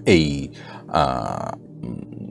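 A man's voice in two short utterances, the first falling in pitch, the second about a second in, over quiet steady background music.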